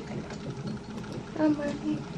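Electronic fetal heart monitor in a delivery room, its speaker giving out the baby's heartbeat as a steady low, rhythmic whooshing. A woman's voice gives a brief answer near the end.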